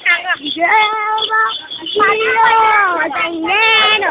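A high voice singing a tune in long, steady held notes: one lasting about a second, then a longer one from about halfway through.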